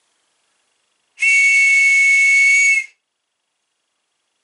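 A military-style whistle on a neck chain is blown once in a long, steady, high-pitched blast of nearly two seconds, two close pitches sounding together over a breathy hiss. The blast signals the start of a two-minute silence.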